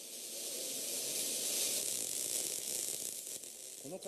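A steady hiss, strongest in the high range, swelling slightly through the middle and easing toward the end.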